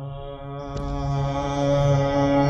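Harmonium sounding sustained held notes that fade in and grow steadily louder.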